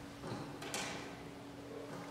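Quiet pause in a hall before singing: a steady low hum with a few soft rustles and small knocks. The loudest is a brief rustle under a second in.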